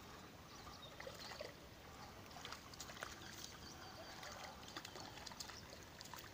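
Near silence: faint outdoor ambience with a few soft scattered clicks.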